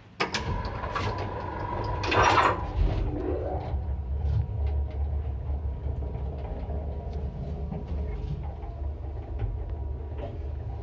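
A 1971 passenger lift (0.65 m/s, 350 kg) set going: a click as the floor button is pressed, a loud rush of the sliding car doors closing about two seconds in, then the car travelling with a steady low hum and small clicks.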